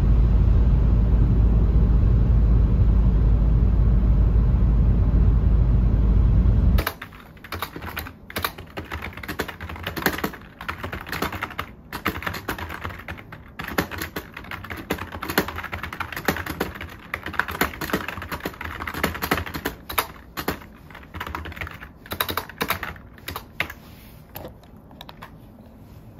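Loud, steady low rumble of road and rain noise inside a car cabin on a wet highway at about 50 mph, cutting off suddenly about seven seconds in. Then typing on a computer keyboard: irregular quick runs of key clicks with short pauses.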